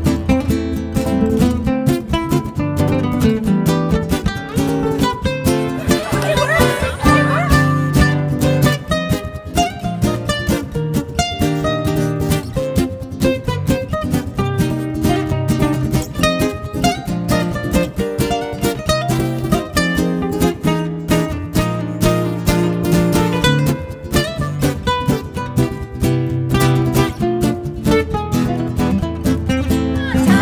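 Background music of plucked acoustic guitar playing a quick, busy run of notes.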